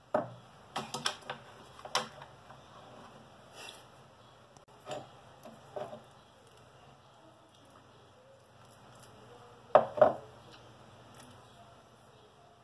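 Scattered small clicks and taps of a spatula and a pot of homemade paste being handled and mixed, with two louder knocks close together about ten seconds in.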